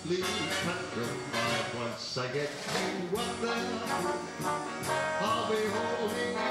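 Swing big band playing live, with brass, piano and drums keeping a steady cymbal beat, and a male voice singing over the band.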